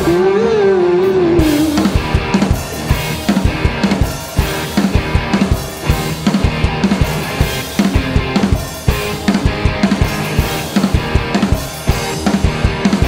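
Live indie rock band playing an instrumental passage: a driving drum kit beat with electric guitars and bass guitar. A held note bends in pitch over the first two seconds, then fades under the drums and guitars.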